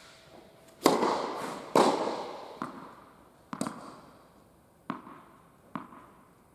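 Tennis ball impacts ringing in a large indoor tennis hall: two loud hits about a second apart near the start, each with a long echo, then three quieter ball bounces on the court about a second apart as the player readies her serve.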